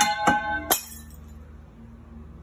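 A thrown glass object hitting the ground: a sharp clink that rings on with several clear tones, a second knock, and a last sharp crack just under a second in.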